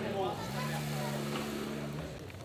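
Motorcycle engine running at steady revs, starting about half a second in, with crowd chatter around it.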